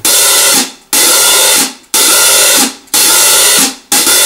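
Hi-hat cymbals played open with a drumstick, giving five long sizzling washes about a second apart, each cut off sharply as the hats close.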